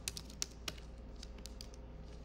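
Typing on a computer keyboard: a handful of quick, irregular keystroke clicks as code is entered.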